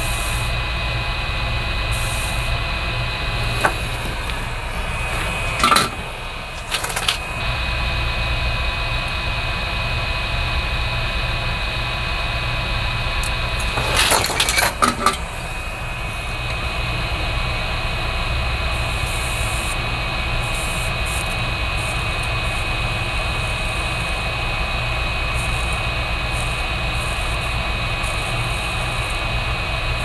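Steady whir of workbench soldering equipment with a thin high whine. A few brief clicks and scraping taps from the soldering work come about six seconds in and again around the middle.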